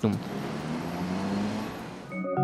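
City street traffic: cars, minibuses and buses running in a line of traffic. It is a steady rumble with a faint low engine hum that rises slightly.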